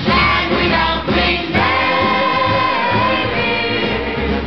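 A chorus of women singing together over band accompaniment, holding one long note through the middle.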